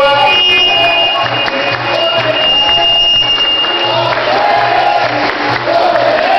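Capoeira roda music: voices singing a melody over a steady drum beat, with the berimbau-led band and the surrounding crowd. A thin, steady high tone runs through the first four seconds.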